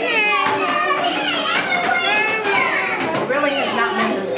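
Young children's voices at play: several high voices overlapping, rising and falling in pitch without a break.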